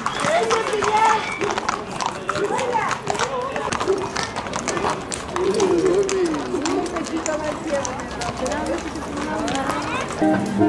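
Horses' hooves clopping irregularly on a paved street as a column of riders passes, with people's voices talking over it.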